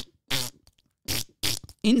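A man's halting speech: a few short syllables separated by brief pauses, then talking picks up again near the end.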